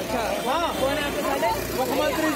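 Raised voices in a heated argument, talking continuously, with road traffic running underneath.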